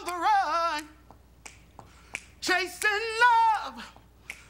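Unaccompanied singing with a wavering vibrato in two phrases, separated by a pause of about a second and a half. A few finger snaps fall in the pause.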